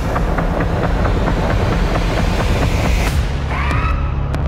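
Trailer sound mix of gunfire: a rapid run of sharp cracks, about four a second, over a loud, dense rumble. Near the end the noise thins and rising tones lead into music.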